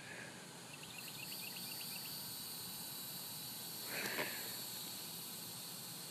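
Faint outdoor ambience of steady high insect buzzing, with a quick run of small chirps about a second in and a brief louder call or rustle about four seconds in.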